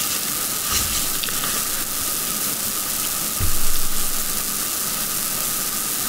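Steady hiss of recording noise, like static, with a soft low bump about three and a half seconds in.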